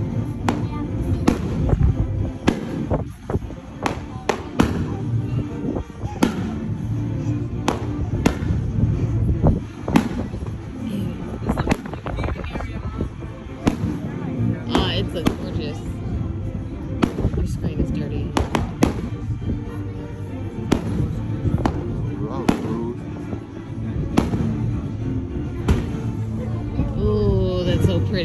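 Aerial fireworks bursting in a run of sharp, irregularly spaced bangs, sometimes several in quick succession. Pirate music plays underneath throughout.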